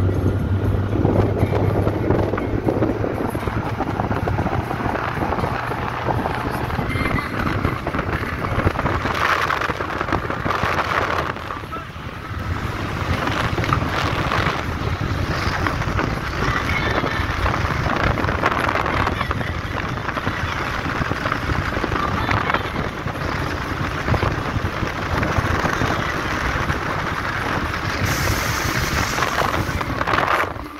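Road and wind noise from a car driving along a mountain road, heard from inside, with wind buffeting the microphone and music playing underneath.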